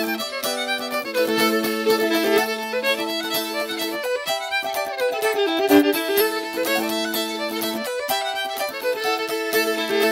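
Traditional old-time fiddle tune: a quick bowed melody played over steady held lower notes.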